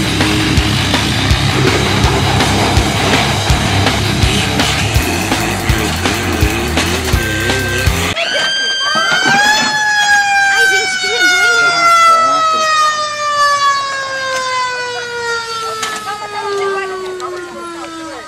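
Loud heavy rock music with drums and vocals, cut off abruptly about eight seconds in. A siren then winds up briefly and slowly winds down, its wail falling steadily in pitch through the rest.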